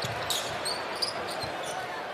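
A basketball being dribbled on a hardwood arena floor, a few faint bounces over steady arena crowd noise.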